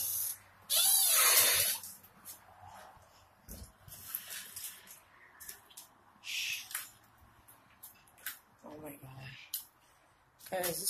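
Footsteps crunching over rubble and debris on a floor, heard as scattered, irregular crunches and clicks. A short loud hiss comes about a second in.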